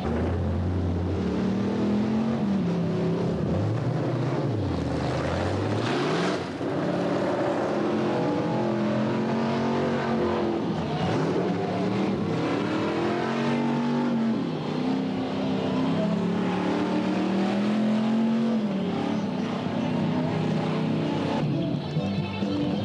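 Car engine revving hard over and over during a burnout, its pitch repeatedly climbing and dropping back.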